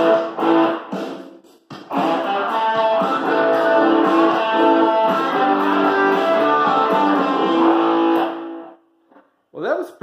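Les Paul-style electric guitar with twin humbuckers played amplified: a riff, a short break, then a long phrase that ends on a held note fading out about a second and a half before the end. A man's voice starts just at the end.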